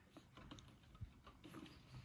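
Near silence, with a few faint, scattered small ticks.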